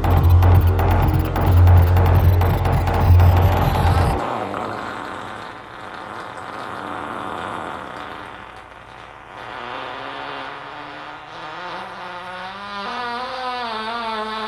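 Experimental electronic music: a loud low throbbing drone with crackling noise on top cuts off abruptly about four seconds in. Quieter textures follow, then stacked wavering electronic tones that rise and warble toward the end.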